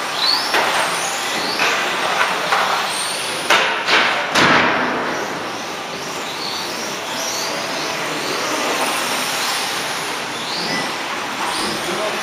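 Electric 1/12-scale RC on-road cars running around a carpet track, their motors whining in short rising and falling glides over a steady hall noise. A few sharp knocks come about three and a half to four and a half seconds in.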